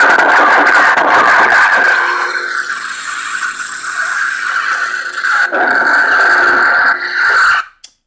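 Lightsaber sound effects from a Crystal Focus (CFX) sound board, played through the hilt's 28 mm speaker: a loud, crackling electronic hum with a steady high whine while the blade shuts down. It cuts off suddenly near the end.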